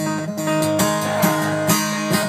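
Acoustic guitar strummed, chords ringing on between strokes.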